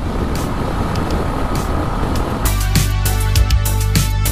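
Motorcycle riding at high speed on a highway: an even rush of engine and road noise. About two and a half seconds in, background music with a strong drum beat starts and takes over.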